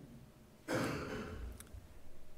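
A man's audible breath, about a second long, starting a little under a second in. A faint click comes near its end.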